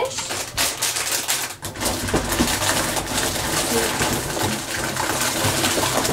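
Plastic blind-bag packets and toy boxes rustling and crinkling as a hand rummages through a box full of them: a continuous crackle, with a quick run of sharp clicks in the first two seconds.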